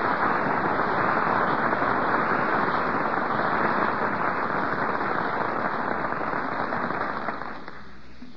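Studio audience applauding, dying away near the end.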